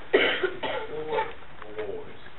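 A person coughing, a sudden sharp burst near the start, followed by talk in the room.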